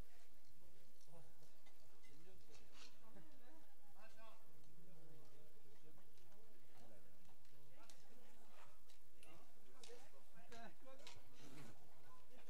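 Bike polo play: sharp knocks of mallets and ball at scattered moments, more often in the second half, over voices of players and spectators calling out.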